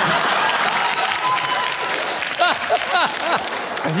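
Studio audience applauding steadily, with a man's voice coming in over the clapping about halfway through.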